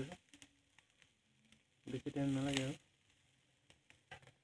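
A voice asking "Ready?" once, about two seconds in. Around it there is only a very quiet background with a few faint clicks of metal tongs against the charcoal grill's wire rack.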